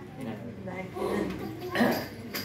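Indistinct voices of people talking quietly, with a short louder burst near the end.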